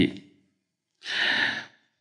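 A man drawing a single breath close to a headset microphone: a short, breathy intake of about half a second, a second into a pause in his speech.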